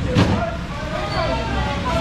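Market stall background of people talking, over a steady low rumble, with one sharp knock about a quarter of a second in.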